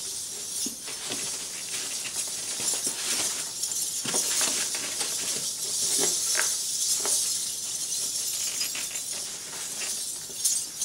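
Small metal coins on a belly-dance coin hip scarf jingling and clinking, with fabric rustling, as the scarf ends are tied and tucked by hand. A steady patter of light ticks.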